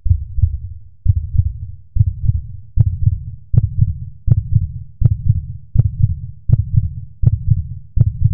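Deep, heartbeat-like bass thumps in a hip hop music track, repeating a little faster than once a second. From about three seconds in, a sharp click lands on each thump.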